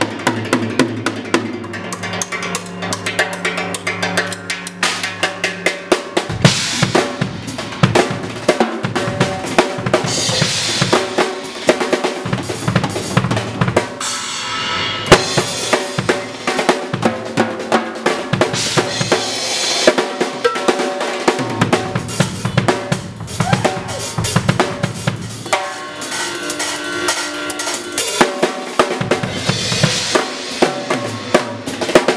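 A drum kit played live, fast and busy: rapid snare and tom strokes with bass drum, rimshots and crashes from Sabian AAX and Zildjian cymbals. A low sustained tone lies under the first six seconds.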